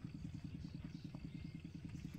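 Faint, steady putter of a small engine running, a fast even low pulsing.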